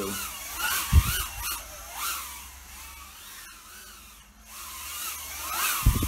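Happymodel Mobula 8 brushless whoop drone in flight, its ducted four-blade propellers whining in a pitch that rises and falls with the throttle. Two sharp thumps, about a second in and near the end.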